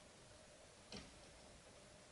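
Near silence: room tone with one faint click about a second in, from scissors snipping into legging fabric.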